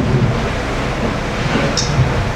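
Steady low rumbling room noise with no speech, picked up loudly by the microphone, with a brief hiss near the end.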